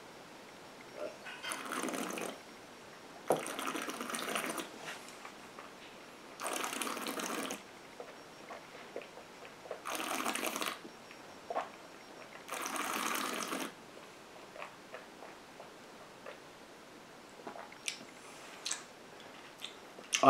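A person tasting whisky, swishing it around the mouth and breathing through it: five breathy, wet swishes or exhales of about a second each, with faint mouth clicks between them.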